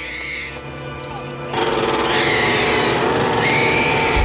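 Trailer sound design: music with a high gliding tone, joined about a second and a half in by a loud, harsh, rattling machine-like noise that stays loud until the cut.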